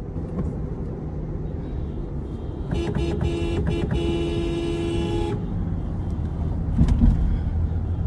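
Car horn honked from inside a moving car: a few short toots about three seconds in, then one long blast of about a second, warning a driver going the wrong way. Steady road and engine rumble underneath, with a brief knock near the end.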